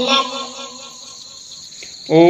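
A spoken word trails off at the start. After it there is only a faint, steady, high-pitched hiss in the background.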